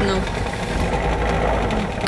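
A small motor or engine running steadily with a low rumble, with faint speech under it.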